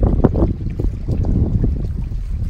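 Strong gusty wind buffeting the microphone, a loud uneven rumble, over choppy lake water lapping against the shore rocks.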